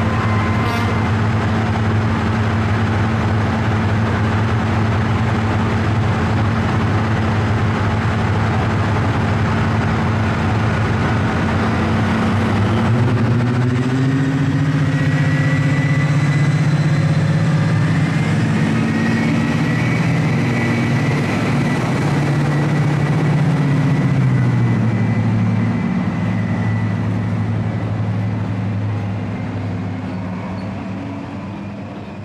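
Class 55 Deltic diesel locomotive's twin Napier Deltic two-stroke engines running at a steady low pitch. About halfway through the revs rise with a faint high whine and hold, then drop back near the end.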